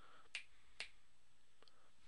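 Two sharp clicks about half a second apart over faint room tone.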